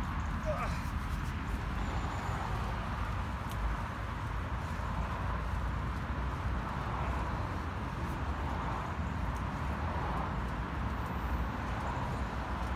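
Steady wind rumble on the microphone outdoors, with faint voice sounds recurring every second or two during a set of push-ups.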